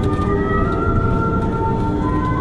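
Cabin noise of an Airbus A330-300 rolling out on the runway just after touchdown: a loud, steady rumble with several high whining tones from its Rolls-Royce Trent 700 engines that slowly shift in pitch.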